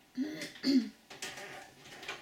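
A woman clearing her throat: two short, raspy voiced sounds about half a second apart, the second louder, followed by a breathy sound.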